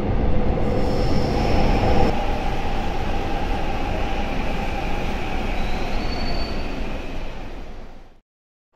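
Seoul Line 6 subway train running with a steady rumble and two brief high wheel squeals. The first comes from inside the moving car; the second comes as a train pulls into the platform behind the screen doors. The noise dies down near the end as the train comes to a stop.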